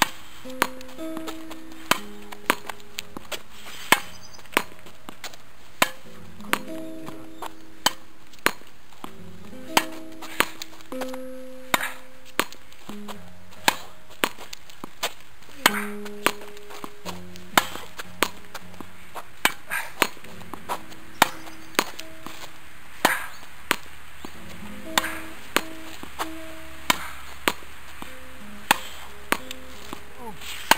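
Tennis ball struck with a racket and rebounding off a practice wall in a steady rally: sharp knocks about once a second, often in pairs. Melodic background music plays underneath.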